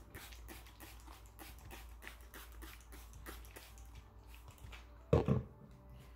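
Hand-held trigger spray bottle misting a houseplant's leaves in quick repeated squirts, about four a second, each a short hiss. A brief, louder sound comes about five seconds in.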